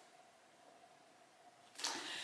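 Near silence: quiet room tone with a faint steady hum, then a brief soft noise near the end.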